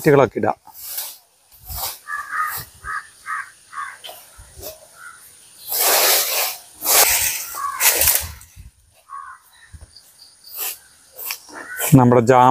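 A fan rake scraping dry leaves across a grass lawn, with three quick scratchy strokes about six to eight seconds in. Earlier, short high chirps repeat a few times a second.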